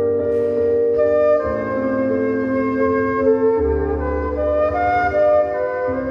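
A slow melody of held notes on a straight woodwind instrument, played into a microphone over a sustained low backing accompaniment whose chords change about every two seconds.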